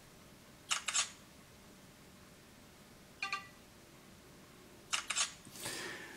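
Takee 1 smartphone's camera shutter sound played through its speaker: a double click about a second in and another near the end, with a short beep between them, as indoor photos are taken. A soft rustle of handling follows the second shutter.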